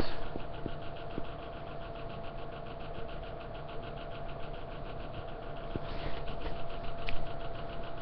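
A steady mechanical hum with a fast, even pulsing, like a small motor running.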